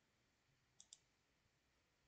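Near silence: room tone, with two faint short clicks close together a little under a second in.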